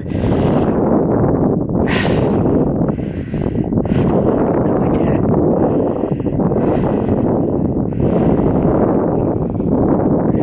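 Wind buffeting the microphone: a loud, continuous rumble that swells and eases.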